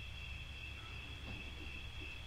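Faint, steady high-pitched trilling of crickets over a low hum.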